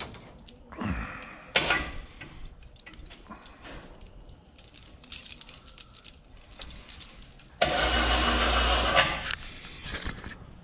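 Metal chain on a skinning gambrel clinking and jingling as a hanging raccoon carcass is handled, with scattered small knocks. About seven and a half seconds in, a loud steady noise runs for about a second and a half, then cuts off.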